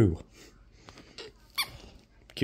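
A few faint, short high squeaks, one a little louder about one and a half seconds in, falling in pitch.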